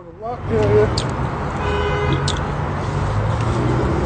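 Road traffic running past, a steady low rumble, with a brief horn-like toot around the middle.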